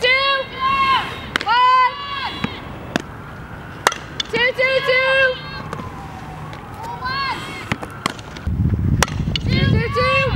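Softball players shouting short calls across the infield about five times, with sharp pops of the ball smacking into leather gloves between them. A low rumble of wind on the microphone sets in near the end.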